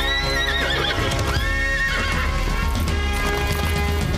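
Film soundtrack: a horse whinnies twice in the first two seconds, over hoofbeats and background music.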